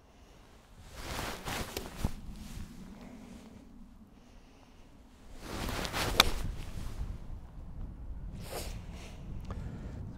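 Golf iron striking the ball on a tee shot: one sharp click about six seconds in, between spells of breezy hiss.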